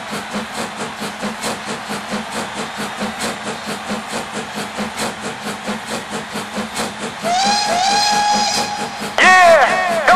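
Train sound effect opening an electronic trance track: steady rhythmic chugging, then a held train whistle about seven seconds in, followed by a louder wavering call near the end.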